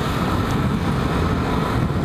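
A 125cc scooter riding along at steady speed: wind rushing on the microphone over the engine's steady running, with a faint steady whine.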